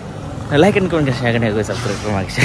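A man talking close to the microphone from about half a second in, over steady street background noise.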